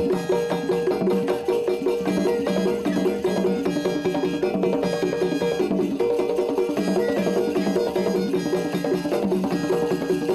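Traditional Zaouli dance music: drums and percussion playing a steady rhythm for the masked dancer, with sustained pitched tones beneath.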